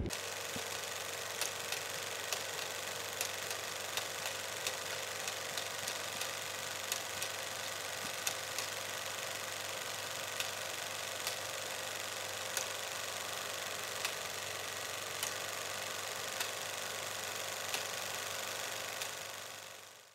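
Old-film crackle effect: a steady hiss with a faint hum, broken by irregular light pops about once a second, fading out near the end.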